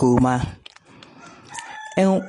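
A rooster crowing in the background: one long held call starting about one and a half seconds in, after a woman's speaking voice breaks off early on.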